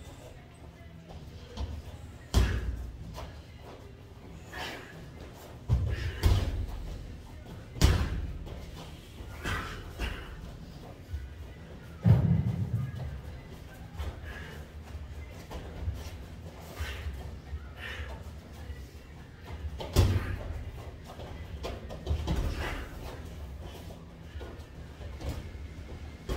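Boxing sparring: irregular heavy thuds and slaps from gloved punches landing and boxers' feet stamping on the ring floor, about a dozen, a second or a few seconds apart.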